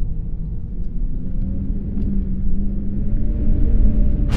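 A deep, steady rumble with a faint sustained hum over it: an ominous ambient drone of film sound design.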